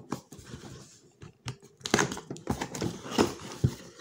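Cardboard retail box being handled and opened: irregular rustling, scraping and light clicks of card against card, sparse for the first second or so and busier from about two seconds in.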